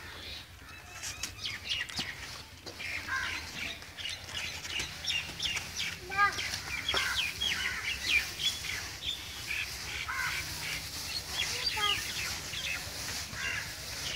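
Birds chirping, many short rising and falling calls throughout, over the soft rustle of dry straw and chopped green fodder being mixed by hand in a concrete trough.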